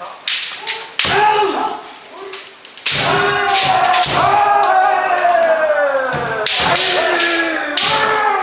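Kendo practice: bamboo shinai clack sharply against each other and against armour several times, while kendoka give long drawn-out kiai shouts that fall in pitch. The longest shout runs from about three seconds in to past six seconds.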